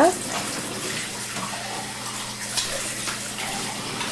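Steady rushing noise like water running from a tap, with a low steady hum beneath and a few faint clinks.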